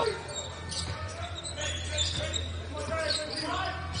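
Basketball bouncing on a hardwood court in a near-empty arena, with faint players' voices in the middle and a steady low hum.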